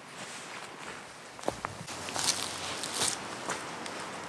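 Footsteps of a person walking over grassy ground: a run of irregular steps.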